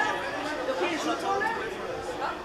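Indistinct chatter of several people talking at once, no words clear, with a hint of a roofed, hall-like space.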